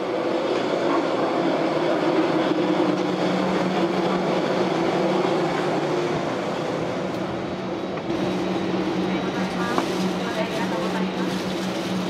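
Steady air-conditioning hum of a parked airliner and its boarding bridge, a low even drone. Faint voices of passengers and crew join in during the last few seconds.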